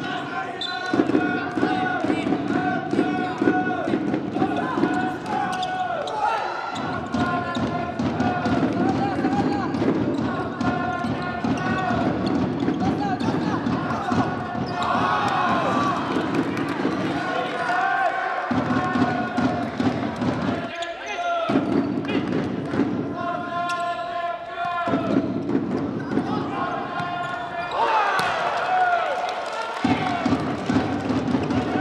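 Live sound of an indoor futsal match: the ball being kicked and bouncing on the wooden court, with voices in the hall throughout.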